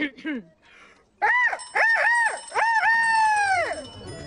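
A high, loud human voice imitating a rooster's crow: several short rising-and-falling notes, then one long held note that falls away.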